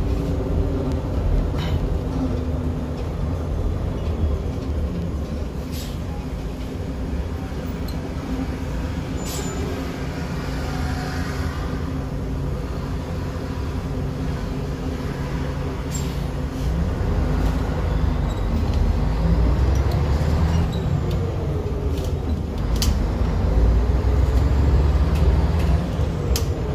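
Diesel engine of a Jelcz 120M/3 city bus running, heard from inside the bus with a deep rumble. In the second half it grows louder and its pitch rises and drops several times as the bus speeds up. Occasional sharp clicks and rattles.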